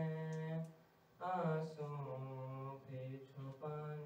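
A young man's solo voice chanting a marsiya, a mourning elegy, into a microphone without accompaniment, in long held melodic lines. There is a short break about a second in before he goes on.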